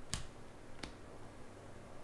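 Stiff chrome trading cards being flipped through by hand, giving two sharp snaps about two-thirds of a second apart as cards are moved through the stack.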